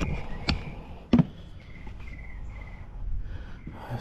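Handling noise: a light knock and then one sharp thump about a second in, as the boot and camera are moved about. Faint bird chirps sound in the background.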